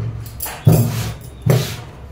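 Hands stroking and patting cut cotton blouse fabric flat on a cloth-covered table, three swishing strokes in quick succession.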